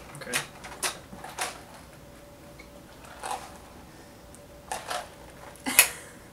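Several short knocks and clatters of plastic iced-coffee cups being picked up and handled on a wooden table, the loudest near the end.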